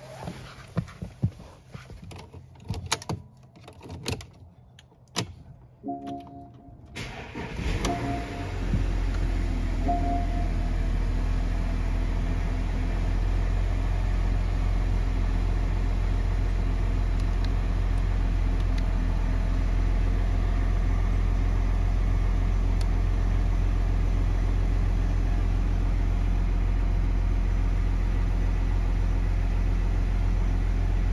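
Porsche Cayenne engine cold-started after sitting overnight. Several clicks come first, then the engine cranks and catches about eight seconds in and settles into a steady idle.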